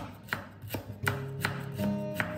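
Cleaver slicing through a torch ginger flower bud and striking a wooden chopping board: a run of sharp, even chops, about three a second.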